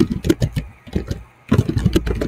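Computer keyboard being typed in a quick run of key clicks, over a low background rumble.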